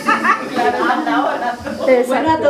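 Speech: people talking in a room, with no music playing.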